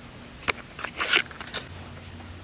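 Handling of a jigsaw blade and its plastic holder as the blade is taken out: a sharp click about half a second in, then a short scraping rustle about a second in and a few light ticks.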